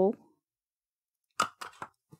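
Handheld plier-style hole punch squeezed through cardstock: three sharp clicks in quick succession, about one and a half seconds in.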